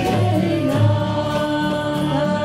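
Kirtan music: a harmonium's held chords, strummed Martin acoustic guitar, bass notes and a transverse flute, with voices singing along.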